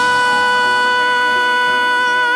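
Pop ballad: a male singer holds one long, steady high note over sparse backing music.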